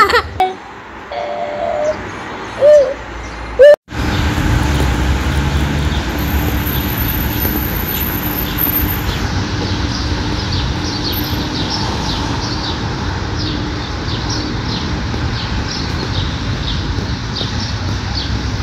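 Birds chirping in short, repeated high calls from about halfway through, over a steady background rumble of city traffic.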